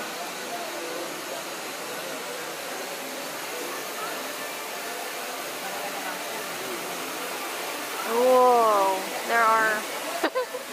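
Steady rushing noise of a dark theme-park ride's ambience, with faint voices underneath. Near the end a person gives a loud drawn-out vocal exclamation that glides down and back up, followed by a short second call.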